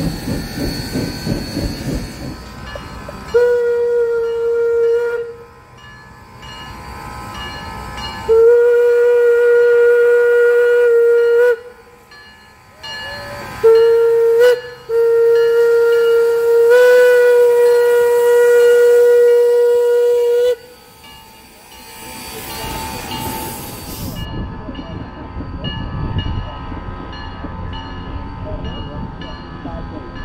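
Steam locomotive whistle blowing the grade-crossing signal: long, long, short, long, the last blast about six seconds with a slight rise in pitch partway through. The train's cars can be heard rolling by before the first blast, and the running train after the last.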